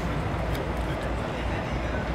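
Steady low rumble of the Amtrak Auto Train running, heard from inside the passenger car.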